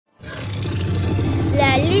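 A deep, loud roar sound effect that swells over the first second and a half. A voice starts to speak near the end.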